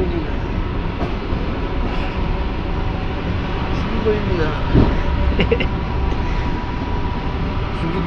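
ER2R electric multiple unit running along the track, heard from inside the carriage: a steady, dense rumble with a faint, steady high whine over it. A single knock about five seconds in.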